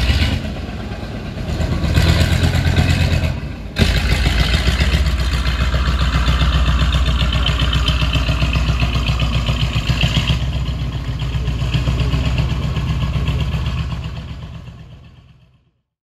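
MT-LB tracked armoured carrier's 240 hp V8 diesel engine running as it drives through deep mud, with its tracks turning. The level drops and jumps back suddenly about four seconds in, and the sound fades out at the end.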